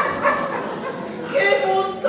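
A stage performer's voice making drawn-out vocal sounds without clear words, with held pitches. One comes at the start and another about one and a half seconds in.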